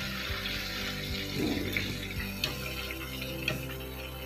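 Chicken pieces deep-frying in hot oil in a steel pan, a steady sizzle, with a few light clinks of a metal spoon against the pan. Background music plays underneath.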